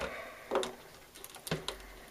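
Faint handling noise with one sharp click about one and a half seconds in, as a re-stuffed capacitor block is pushed by hand into its metal can.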